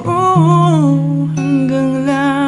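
Acoustic love-song cover: a singer holds long notes that glide between pitches over acoustic guitar accompaniment.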